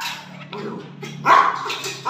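A pet dog gives a few sharp barks while being made to wait for its food bowl at feeding time.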